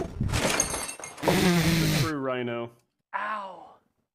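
A large Lego Millennium Falcon model smashing as a man falls into it: a loud crash of plastic breaking and pieces scattering for about two seconds, with the man shouting over the second half. Two shorter cries from him follow.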